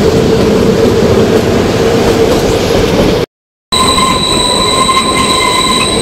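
Kalka–Shimla narrow-gauge toy train carriage running along the track, with loud wheel-and-rail noise and a steady high wheel squeal as it rounds a curve. The sound cuts out completely for about half a second just past halfway, then resumes.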